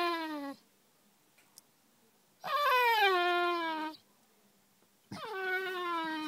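Basset hound crying: long whining howls that slide down in pitch, each a second or more. One cry ends just after the start, a full cry comes in the middle, and another begins near the end.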